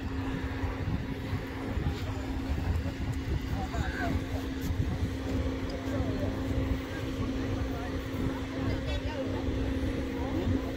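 A steady, even hum like an idling motor, over a low outdoor rumble, with quiet voices talking in the background.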